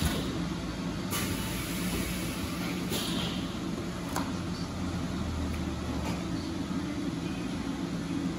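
Steady hum of a high-frequency plastic welding machine running idle, broken by a few sharp clicks and knocks. A deeper hum swells for about a second past the middle.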